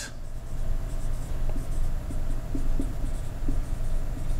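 Marker writing on a whiteboard in a run of short strokes, over a steady low hum.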